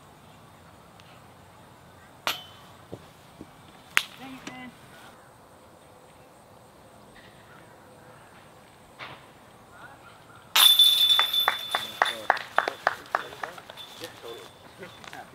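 A disc golf putt striking the chains of a chain basket about ten and a half seconds in: a loud metallic clash, then a jingling rattle of chains that dies away over about three seconds as the putt drops in. Two sharp knocks come earlier.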